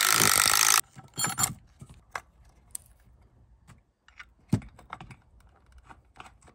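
Cordless drill boring through a wooden two-by-four to make a hole for a bolt, running at full speed and cutting off suddenly within the first second. Then scattered light clicks and metal clinks as the bolt and hangers are handled and fitted.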